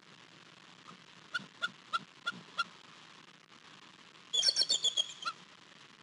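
Bald eagle calling: a run of five short, evenly spaced high notes, about three a second, then a louder, rapid chattering burst lasting about a second near the end.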